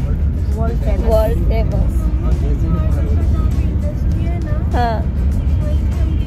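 Steady low road and engine rumble heard from inside a moving vehicle, with indistinct voices and music over it.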